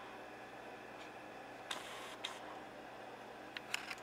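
Quiet room tone with a few faint, light clicks of handling noise, one pair around the middle and another near the end.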